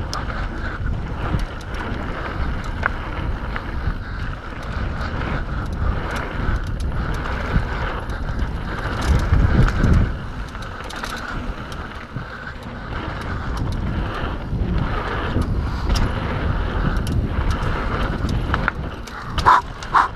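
Mountain bike descending a dirt trail at speed: wind rushing over the camera microphone and tyres running on dirt, with many short clicks and rattles from the bike over bumps. The rumble swells briefly about halfway through, and there is a sharp knock near the end.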